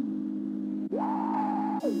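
Hip-hop beat intro: sustained synthesizer chords that change about once a second, with a higher note that glides up about halfway through, holds, and glides back down near the end.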